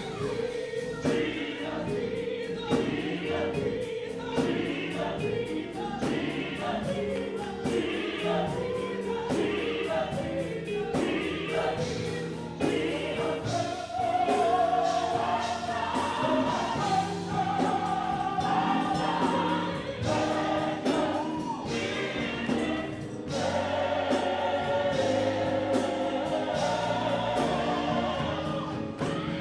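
Live gospel music: a choir singing full-voiced over a band with a steady drum beat, keyboard and guitar. The lead singer's microphone is low in the mix, so her voice is hard to hear over the choir.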